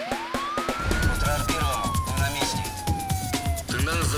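Siren sound effect in a news show's theme music: one siren tone rises quickly over about a second, then falls slowly and cuts off shortly before the end, over music with a beat.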